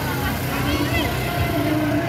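Motorbike and scooter engines running as they ride past close by, mixed with the voices of a walking crowd.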